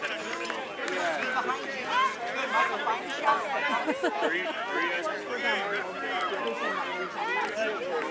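Many voices chattering and calling over one another, unintelligible, with high-pitched children's voices prominent among them.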